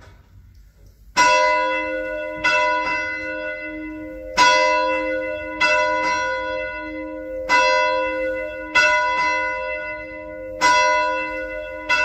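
A single church bell rung by pulling its bell rope: after about a second, about eight strokes at a slow, slightly uneven pace, each ringing on and fading before the next, with a lighter extra hit after some strokes.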